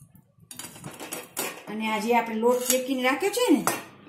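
A steel spoon clinking and scraping against a steel cooking pan in sharp knocks, followed by a louder pitched, wavering sound that ends in a quick downward slide.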